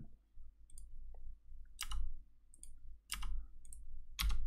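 A computer mouse clicking: about five separate sharp clicks spread irregularly across a few seconds.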